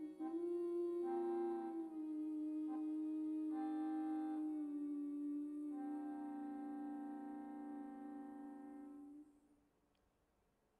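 Jazz big band of saxophones, clarinets and brass holding long sustained chords that change a few times, then fading and cutting off about nine seconds in: the closing chord of the piece.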